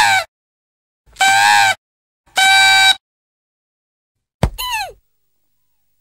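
Short edited-in sound effects for an animated title: three separate pitched sounds about half a second each, with dead silence between them, then a sharp click and a brief falling tone near the end.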